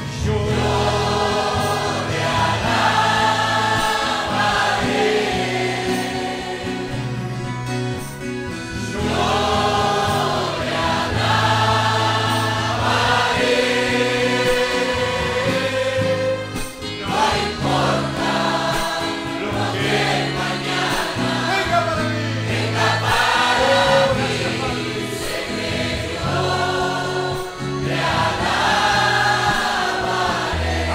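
Church congregation singing a worship song together over instrumental accompaniment, with steady low bass notes changing every second or two under the voices.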